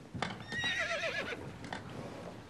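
A horse whinnies once, a wavering call lasting just under a second, with a couple of faint knocks around it.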